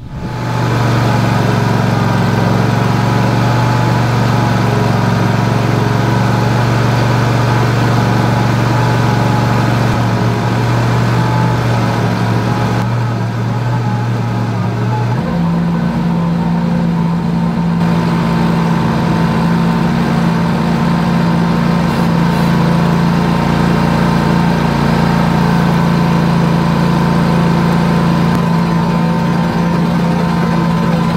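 Ventrac 4500K compact tractor's Kubota diesel engine running steadily. Its pitch steps up about halfway through as engine speed rises.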